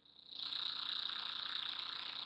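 Faint, steady, high-pitched background hiss that sets in a moment after a brief silence, with no distinct clicks or keystrokes.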